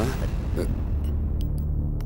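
Low, steady drone of a background music score, a few held bass notes that swell in about a second in, after a short bit of speech.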